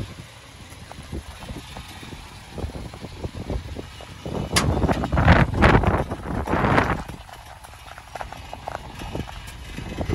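Footsteps crunching on wet gravel, irregular and several to the second. Midway through, a louder rustling, crunching noise starts with a sharp click and lasts about two and a half seconds.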